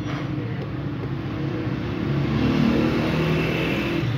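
Steady background rumble and hiss of motor traffic, growing a little louder about two seconds in.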